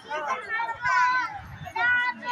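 Passers-by talking close to the microphone, children's high voices among them, over street chatter.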